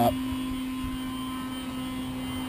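A steady low hum over a faint rumble, with no clear handling sounds standing out.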